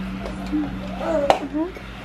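Background music with soft voices, and a single sharp click about a second in as a small toy car is set down on a wooden floor.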